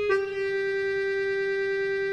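Background score music: a solo wind instrument plays a new, slightly lower note just after the start and holds it steadily.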